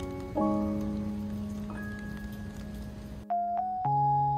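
Background music of slow keyboard notes over the steady hiss of rain falling on wet paving; the rain cuts off suddenly about three seconds in, leaving the music alone.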